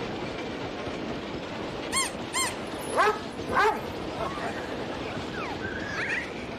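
A baby whimpering, with two rising cries a little past halfway, the loudest sounds here, and fainter fussing after. About two seconds in come two short high squeaks just before.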